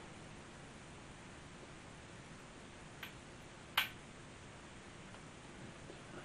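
Two small metallic clicks, a faint one about three seconds in and a sharper, louder one just before four seconds: a screwdriver and screw tapping against the metal chassis of a Marconi CR100 receiver as a screw is worked into the RF tag board. Otherwise only a faint steady hiss.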